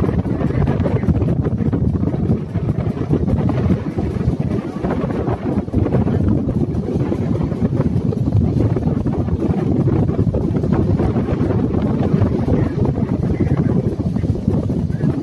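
Wind buffeting the microphone aboard a moving boat, a steady low rumble, with the boat's engine and rushing water underneath.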